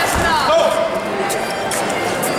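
Shouting from ringside at an amateur boxing bout, with a dull thump just after the start as the boxers clinch and exchange blows, followed by a few short sharp smacks.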